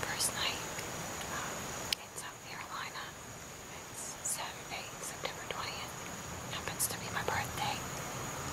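A woman whispering close to the microphone, with a faint steady high-pitched whine behind her.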